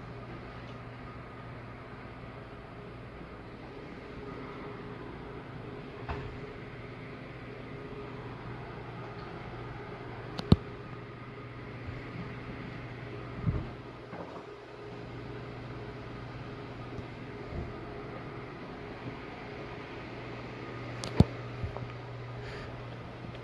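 Steady low mechanical hum of a shop interior. Two sharp clicks break it, one about halfway and a louder one near the end, with a dull knock in between.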